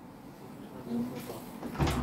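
A single knock near the end, over faint room noise.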